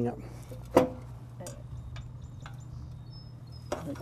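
Walk-behind tractor's small engine idling with a steady low hum, with one sharp knock about a second in and a few faint ticks.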